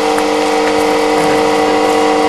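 A steady droning hum made of several evenly spaced pitched tones, unchanging in pitch and level.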